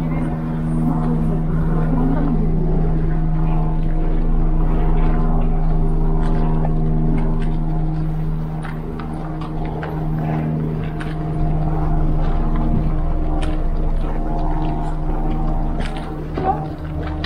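Diesel engine of a Hidromek tracked excavator running steadily with an even hum. A few light clicks come near the end.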